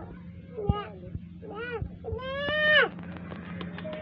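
A baby vocalising in high-pitched babbles: a few short rising-and-falling calls, then a longer, louder one about two seconds in.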